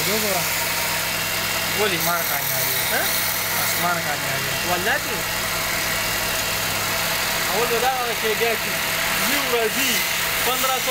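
Motor-driven wood lathe running with a steady hum while a hand-held chisel cuts grooves into a spinning wooden spindle, with a hiss of shavings.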